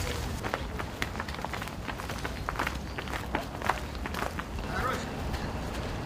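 Footballers running on a training pitch: irregular footfalls and knocks, with faint voices in the background.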